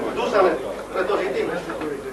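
Indistinct chatter: several people talking at once, no single clear speaker.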